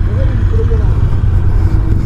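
Macbor Montana XR5's parallel-twin engine idling with a steady low rumble while the bike stands on the track. A faint voice is heard in the first second.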